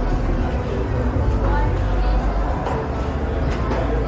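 Nearby people talking in the background over a steady low rumble.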